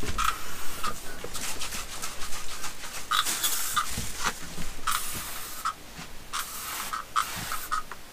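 Aerosol spray can sprayed in several short hissing bursts, each under a second, with brief gaps between them.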